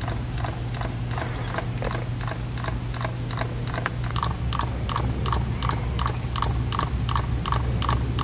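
Fujifilm X-S10's in-body image stabiliser malfunctioning: the stabilised sensor unit ticks and knocks over and over, faint and uneven at first, then louder and steady at about three clicks a second from about four seconds in. A steady low hum runs underneath. The owner takes this for a bug in the stabiliser.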